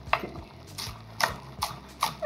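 Chef's knife chopping spring onions on a wooden cutting board: several sharp knocks of the blade on the board, roughly two a second.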